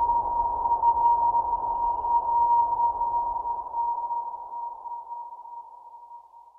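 A single steady electronic tone, like a sonar ping, held over a low hiss and slowly fading away over about six seconds.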